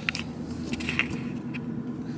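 A few short clicks and rustles of small objects being handled inside a car cabin, over the steady low hum of the idling car.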